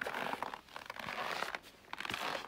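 Footsteps crunching in dry, frozen snow at about minus thirty: two long crunches about a second apart.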